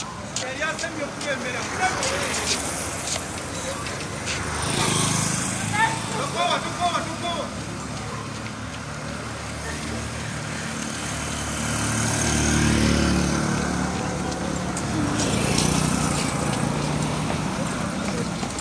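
Street sound of a group run: a motor vehicle's engine running close by, growing louder about twelve seconds in and again near the end, with runners' voices calling out over it.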